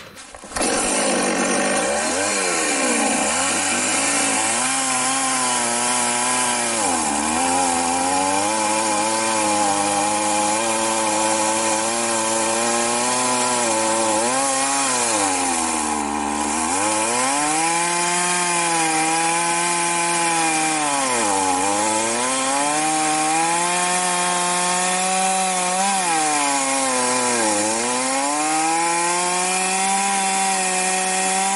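Two-stroke chainsaw running at high revs, starting suddenly. Its pitch drops and recovers several times, as the engine is loaded down in a cut through wood.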